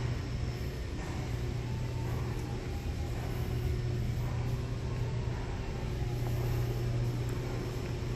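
Steady low hum and rush of a large building's ventilation or air-handling system, unchanging throughout, with no distinct knocks or clicks.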